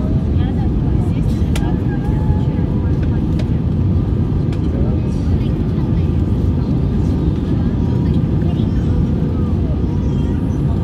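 Steady low rumble of an Airbus A320's engines and airflow heard inside the passenger cabin on final approach, with faint voices of passengers under it.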